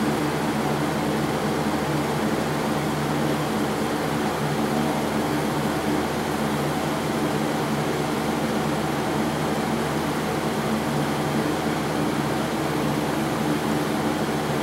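Propane space heater running on high: a steady rushing noise with an even low hum underneath.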